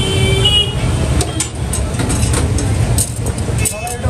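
Busy street ambience: a constant low rumble of traffic and a crowd's chatter, with a brief horn toot right at the start and scattered clinks.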